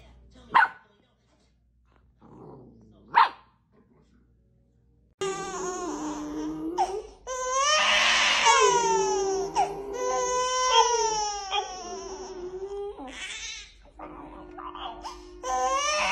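Two brief high sounds about half a second and three seconds in, then from about five seconds an infant crying in long, wavering cries, with a French bulldog howling along.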